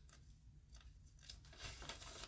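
Faint, brief rustles of paper sheets being handled and leafed through, a few soft crinkles that come a little closer together near the end, over quiet room hum.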